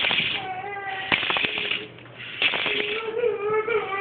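A toddler's wordless vocalizing: three drawn-out, wavering calls, the last one the longest, with short hissy bursts between them.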